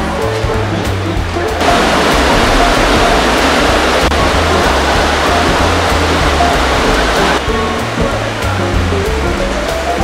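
Garden hose spraying water over a goat being washed: a steady hiss that starts abruptly about a second and a half in and stops abruptly about two and a half seconds before the end. Background music with a steady bass line plays underneath throughout.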